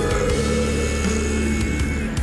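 Rock music, an instrumental passage with no singing, steady and dense throughout.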